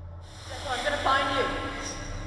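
A short, breathy, voice-like sound begins about half a second in, its pitch sliding and then falling, over a low steady drone.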